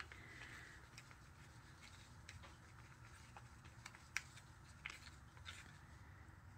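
Near silence with a few faint clicks and light scrapes: a wooden craft stick stirring thick acrylic paint in a plastic cup, knocking against the cup wall now and then. The sharpest click comes a little after four seconds.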